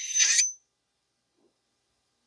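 Short metal-on-metal scrape with a thin ring as the steel gas piston slides off the ATI Bulldog 12-gauge shotgun's barrel, cut off suddenly about half a second in. Dead silence follows.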